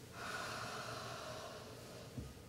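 A person breathing out slowly and audibly, one long exhale lasting nearly two seconds, as a settling breath at the start of seated meditation.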